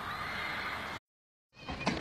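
Dog whining: one high, drawn-out whine that is cut off abruptly about a second in.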